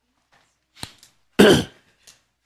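A man clears his throat once, loudly, about a second and a half in, after a short sharp click.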